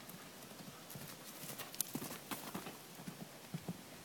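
Hoofbeats of a yearling horse cantering on a dirt and grass lunging track: a run of dull, uneven thuds that grows louder about a second in as the horse comes close, loudest in the middle.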